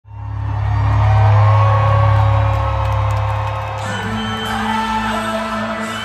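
Live rock band music, loud. It fades in at the start with a sustained low drone and held notes above it, then shifts to a new chord about four seconds in.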